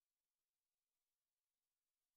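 Near silence: only a very faint, even hiss.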